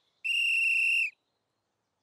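A single high whistle blast, held steady for just under a second: the signal to start a marching parade.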